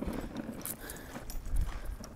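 Footsteps at walking pace on a dry dirt path, a series of soft, uneven steps.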